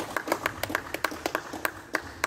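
Spectators' hands clapping in a quick, steady rhythm of about six or seven claps a second, applauding at the end of a badminton match.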